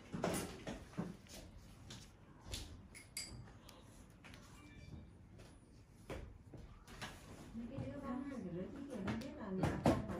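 Faint voices of people talking in the background, clearest near the end, with scattered soft clicks and knocks.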